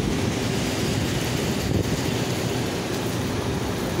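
Heavy rain falling steadily on a flooded parking lot and the cars parked in it, an even hiss.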